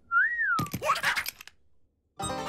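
A single whistled note that rises and then falls, lasting about half a second. It is followed by about a second of busy, noisy cartoon sound with a brief voice in it.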